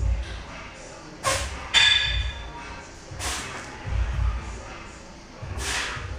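A set of barbell bench press reps: dull thuds and short, sharp bursts about every two seconds, with a brief metallic ring from the loaded bar and plates about two seconds in.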